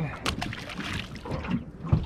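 A small released fish splashing at the water's surface beside an aluminium boat before it swims down, then a single low thump near the end.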